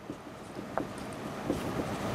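Felt-tip marker writing on a whiteboard: faint scratching strokes over a steady hiss that slowly grows louder.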